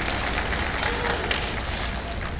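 Audience applauding, a dense steady patter of many hands clapping.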